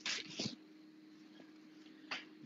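A short breathy noise in the first half second, then a quiet pause with a faint steady hum on the line.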